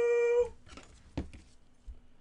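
A man's voice holding one long, high, steady note as he draws out a shouted name, breaking off about half a second in. After it come only faint clicks and rustles of handling.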